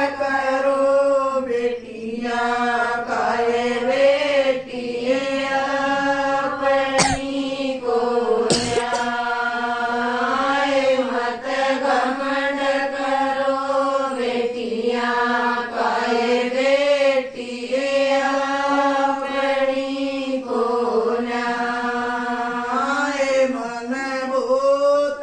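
A group of women singing a song together in unison, a slow chant-like melody with long held notes that runs on without a break. Two brief sharp clicks cut across the singing about a third of the way in.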